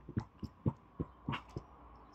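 A man's soft chuckling: a run of short, quiet breathy laughs about four a second, fading out.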